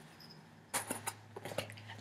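Fingers picking and scratching at packing tape on a cardboard box, with a few short scratchy rips starting about three-quarters of a second in.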